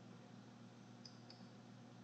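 Near silence: a faint low hum, with a faint computer mouse click about a second in as a list row is selected.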